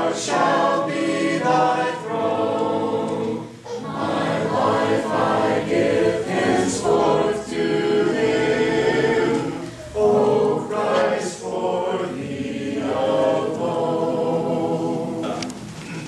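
Congregation singing a hymn a cappella, with no instruments, led by one male voice at the microphone. The singing runs in sustained phrases with short breaths between them.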